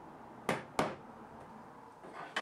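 A mallet tapping twice on an MDF shelf, two sharp knocks about a third of a second apart, seating it into its routed dado for a snug friction fit.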